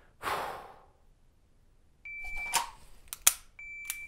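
Shot timer start beep about two seconds in, then draw clicks and the sharp click of a pistol dry-firing about a second later, and a second identical beep marking the 1.5-second par time near the end.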